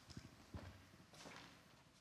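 Faint footsteps and a few soft knocks on a wooden stage floor, with light handling of a handheld microphone as it is passed over.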